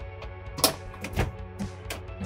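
Several sharp knocks and clatter from the upper bunk board of a camper trailer as it is pushed on and loaded with a person's weight, the loudest a little over half a second in, over steady background music.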